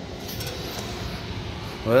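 Steady running noise of a rooftop package air-conditioning unit, with a few faint metallic clinks as wiring inside the cabinet is handled.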